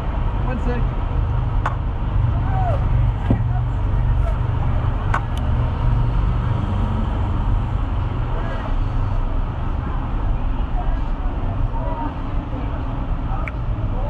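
Lamborghini race car's engine idling, a steady low rumble heard inside the cabin, with a few faint clicks.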